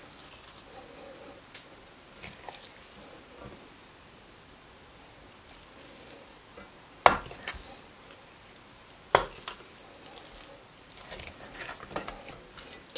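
Two sharp knocks, about seven and nine seconds in, of a wooden spoon against a stainless steel pot while a stretchy mass of cheese flour halva is lifted and worked. Between them only faint soft handling sounds.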